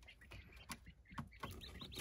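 Faint, short high peeps from young Japanese quail chicks, about three weeks old, with a few light ticks, mostly near the end.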